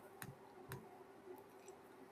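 Near silence: faint room tone with three faint clicks.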